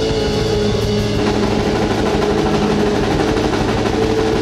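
Live band music with a drum kit keeping a steady beat under held notes from an accordion and a Nord Stage 2 electric keyboard.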